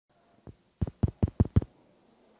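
A single faint knock, then a quick run of five sharp knocks or taps, evenly and rapidly spaced.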